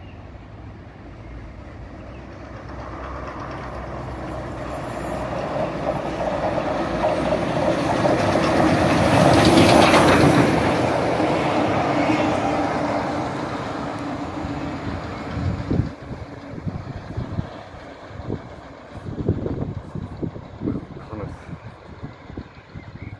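Rebuilt Merchant Navy class steam locomotive 35018 'British India Line' and its maroon coaches running through a station at speed: the rumble of engine and wheels swells to a peak about ten seconds in and then fades. In the last few seconds the wheels beat irregularly over the rail joints as the train goes away.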